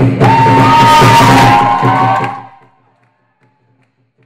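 Lion dance drum and cymbals playing a loud, sustained roll with ringing cymbals. It dies away about two and a half seconds in.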